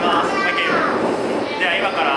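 A person's voice, one long drawn-out call whose pitch glides up and then down, as in a greeting, followed near the end by short bits of speech.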